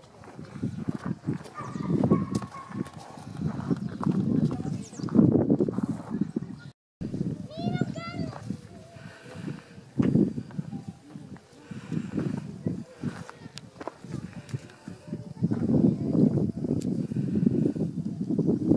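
Outdoor noise with irregular low rumbling and knocks, and a farm animal calling once, a short run of rising cries, about eight seconds in.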